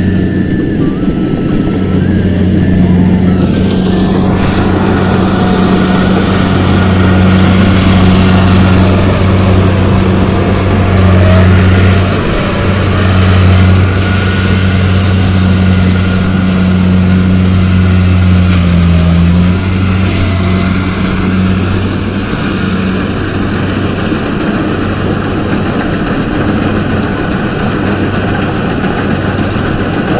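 Kubota rice combine harvester's diesel engine running steadily under load with a low hum while it cuts the crop, with the clatter of its machinery over it. It grows somewhat quieter after about twenty seconds.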